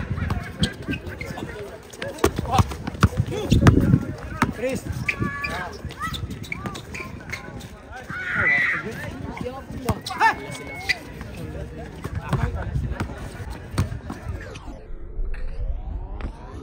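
Basketball game sounds: the ball bouncing and being dribbled on the court, with repeated sharp knocks, mixed with indistinct calls from the players.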